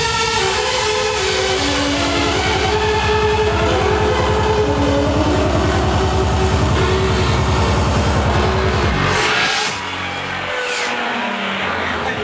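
Hardstyle dance music played loud over a PA, with a heavy, fast bass beat under synth melody lines. About nine seconds in the bass cuts out, leaving the synth lines and rising sweeps in a breakdown.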